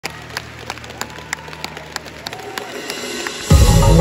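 Live pop song intro through an arena sound system: a sharp ticking beat about three times a second over a low drone, building until the full, bass-heavy track comes in suddenly and loudly about three and a half seconds in.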